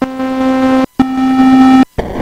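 Soundgin SSG01 sound synthesizer chip playing two steady notes at the same pitch, each just under a second long with a brief silence between them. The first is a triangle wave that rises in loudness over its opening moment; the second is a buzzier square wave.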